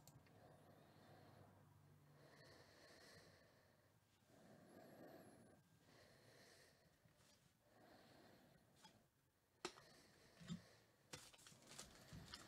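Near silence: room tone, with a few faint clicks and a light rustle in the last couple of seconds.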